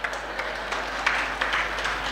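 Audience applause: many hands clapping, starting suddenly and carrying on without a break.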